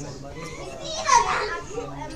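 A young child's high-pitched shout or squeal, loudest about a second in, with faint voices around it.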